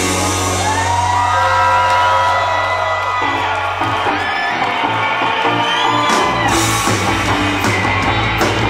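Live instrumental surf rock band: electric guitars bending and sliding in pitch over a held bass note, with the drums dropped out. Cymbals and drums crash back in near the end.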